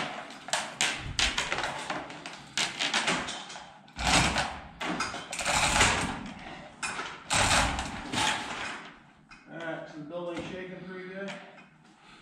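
Metal chain of a hand-operated chain hoist rattling and clanking as it is pulled and shifted, with a quick run of sharp clinks and two longer noisy rushes of chain. Near the end the clatter dies down and a man's voice is faintly heard.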